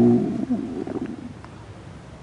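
A man's voice trailing off at the end of a word into a low, drawn-out hesitation hum that fades within about a second, then a short pause.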